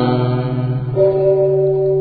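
Sustained backing music of a Buddhist chant recording between chanted lines. One held chord fades out and a new steady low note comes in about a second in and holds.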